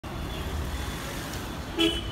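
City street traffic rumbling steadily, with one short vehicle horn toot near the end.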